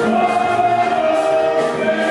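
Choir singing a gospel song, with long held notes.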